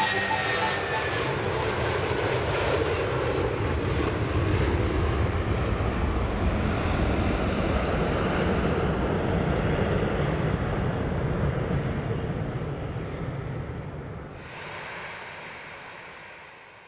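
Jet airliner passing low overhead: a loud, steady roar and rumble of its engines, with a faint whine falling in pitch in the first second, then fading away over the last few seconds.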